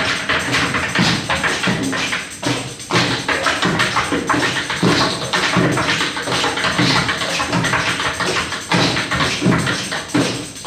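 Live acoustic music driven by hand drums, with dense, irregular percussive strikes.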